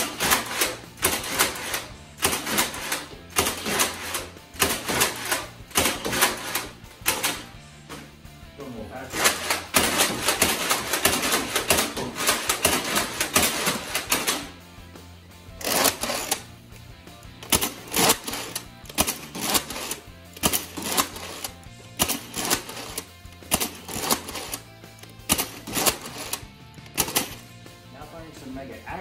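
Nerf Mega Centurion bolt-action foam-dart blaster being primed and fired again and again: sharp plastic clacks of the bolt pulled back and pushed forward, and the snap of each shot, over background music with a low beat.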